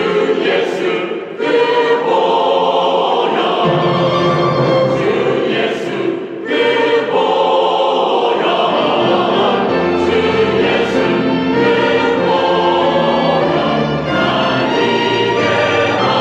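Mixed church choir singing a Korean hymn about the blood of Jesus, with a small string ensemble accompanying. The singing breaks briefly between phrases about a second in and about six seconds in, and a low bass part comes in about four seconds in.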